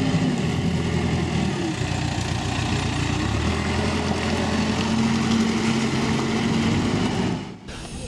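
Diesel engine of a Terex backhoe loader running steadily as the machine drives past on a dirt track. The sound cuts off suddenly near the end.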